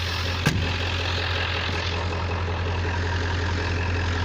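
1997 Ford F350's 7.3 Powerstroke turbo-diesel V8 idling steadily, with one sharp knock about half a second in.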